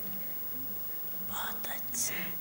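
A pause in a talk: a quiet room with a faint steady hum. In the last half second comes a soft, breathy, whispered voice sound with no voiced words.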